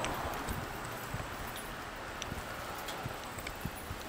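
Irregular light knocks and sharp clicks over a steady rushing street noise, while moving along a paved city pavement.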